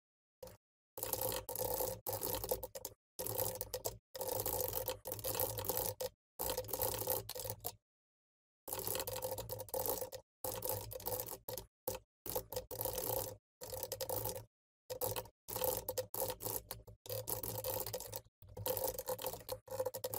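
Typing on a computer keyboard: quick irregular keystrokes in runs of a few seconds, broken by short pauses.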